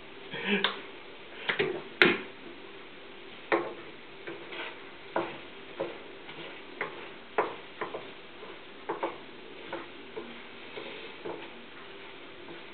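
A spatula knocking and scraping against a frying pan as food is stirred, in short irregular taps about once a second.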